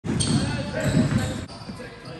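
A basketball bouncing on a sports-hall court amid players' voices and high-pitched squeaks, cutting off abruptly about one and a half seconds in.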